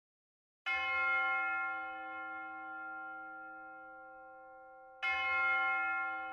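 A bell struck twice, about four seconds apart, each stroke ringing on with several steady tones and slowly fading.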